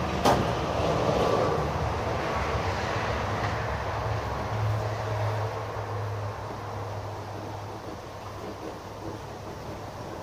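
A low, steady mechanical hum that swells in the middle and fades toward the end, with a sharp click just after the start.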